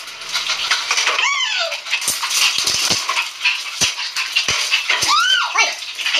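A small pet animal crying in a few high calls that rise and fall in pitch, one about a second in and more near the end, over rustling and scattered clicks.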